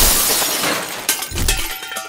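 Crash of breaking glass, tapering off as shards settle, with a second smash and thud about a second and a half in.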